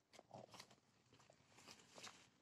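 Near silence, with a few faint, scattered crunching ticks.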